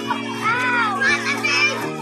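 Children calling out while playing, with a couple of arching cries in the first second, over background music with steady held notes.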